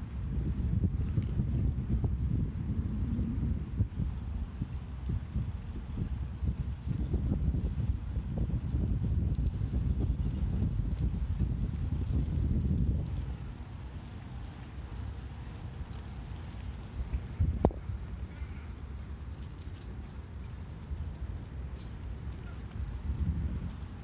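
Low, steady rumble of wind buffeting the microphone and bicycle tyres rolling on a paved path while riding. It is heavier for the first half and eases off about halfway through, with one sharp click a little after that.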